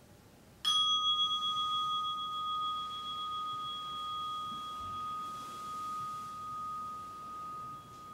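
A meditation bell struck once, ringing on with a clear tone that fades slowly and wavers, marking the end of the sitting.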